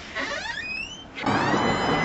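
A door being unlocked and swung open, its hinge squeaking: a short rising creak, then about a second in a louder, steady squeal as the door opens.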